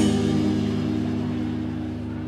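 A rock band's final chord ringing out: a last full-band hit with a cymbal crash right at the start, then electric guitars and bass sustaining and slowly fading.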